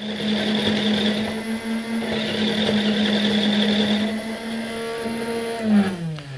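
Electric motors of a Dart Zone Scorpion–based foam-dart blaster running: the flywheels spin while the barrel rotates and the belt feeds, a steady hum. Near the end the hum drops in pitch and winds down.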